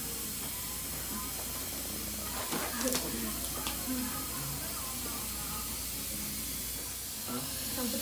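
Steady hiss of a dental suction tip drawing air and saliva from the mouth during a tooth extraction. Two short clicks of metal instruments come about three seconds in, under faint low voices.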